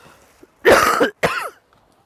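A person coughing twice in quick succession, about half a second apart; the first cough is the louder, the second ends in a short falling voiced sound.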